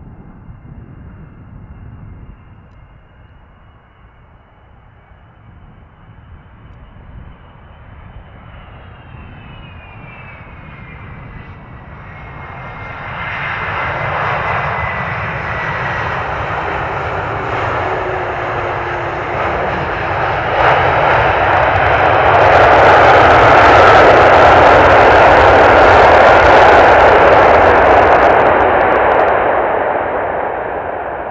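Airbus A330 jet engines on a landing: a faint whine that drops in pitch as the aircraft passes, then rising engine noise, and from about two-thirds of the way in a loud, steady rush of reverse thrust after touchdown that eases off near the end.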